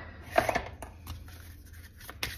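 Tarot cards being picked up and handled: a click at the start, a quick flurry of card rustles and taps about half a second in, then faint light taps as the deck is gathered in the hands.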